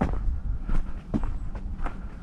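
Hiker's footsteps on a trail at a steady walking pace, about two steps a second.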